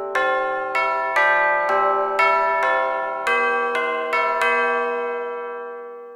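Intro jingle of bell-like struck notes, about two a second, each ringing on under the next; the last note fades out near the end.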